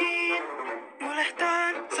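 A children's TV theme song sung in Finnish: a voice singing over backing music.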